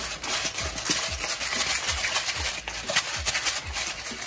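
Hand pepper mill grinding black peppercorns over a pan: a steady rasping crunch that pulses about three times a second with the twisting strokes.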